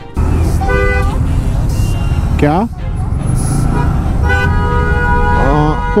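City traffic rumble with a motorcycle running and wind on the microphone. A vehicle horn honks briefly about a second in, and again for nearly a second near the end.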